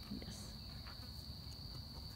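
Crickets trilling steadily in a high, even pitch, with a few faint rustles.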